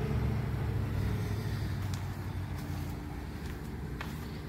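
A motor vehicle's engine rumble, growing fainter over the few seconds as it moves away.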